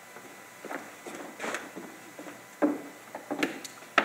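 A few irregular knocks and footsteps on a wooden stage floor, the loudest a sharp knock a little past halfway, over quiet room tone.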